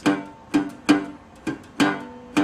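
Metal-bodied resonator guitar in open G tuning, the thumb pulsing palm-muted bass notes on the fifth string in the Delta blues dead thumb technique: short, muffled plucks that die away quickly, in an uneven long-short rhythm.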